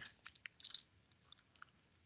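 A few faint, scattered small clicks during a pause in the talk.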